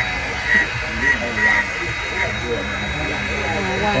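Handheld corded engraving tool running with a steady high whine as its bit cuts into the granite of a headstone, deepening the engraved lettering.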